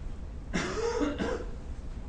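A man coughing: two short coughs in quick succession about half a second in.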